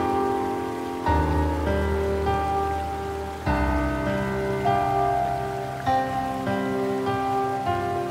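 Slow, gentle solo piano music: notes and chords struck about once a second ring on over sustained bass notes that change roughly every two and a half seconds.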